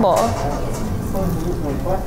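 A single spoken word at the start, then a steady background of faint music and low hum, with no clear chewing or crunching sound.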